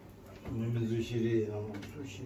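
A deep male voice intoning a low, drawn-out chant. It starts about half a second in and is held, with a short break near the middle.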